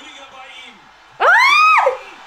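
A woman's short, high-pitched excited squeal about a second in, rising and then falling in pitch. Before it there are only faint low voices.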